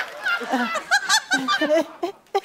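People laughing and snickering in short bursts, with a little speech mixed in.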